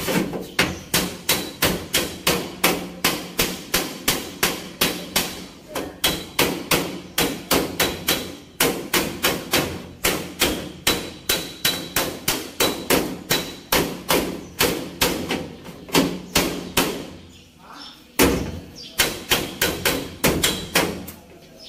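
Hammer blows on the sheet-metal patch panel around the rear wheel arch of a Mitsubishi L300 van, struck in a fast, even rhythm of about three a second, with a brief pause near the end before the hammering resumes.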